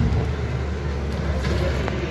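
Road traffic: a steady low engine rumble with general street noise.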